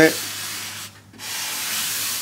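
A fine-grit sanding sponge rubbing across the bare wooden top of an archtop guitar body in two long strokes with a short pause between them. This is fine sanding of the raw wood before a finish goes on.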